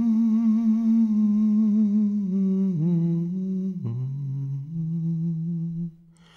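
A man humming a slow, wordless melody alone, with no accompaniment, holding long notes with a gentle wavering vibrato. About two-thirds of the way through, the line falls to a lower note, then steps up slightly, and the phrase ends near the close.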